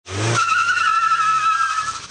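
Mazda Miata doing a weak burnout: the tyre spinning on concrete with a steady high squeal over the engine's low running note. The squeal sets in a moment after the engine sound starts.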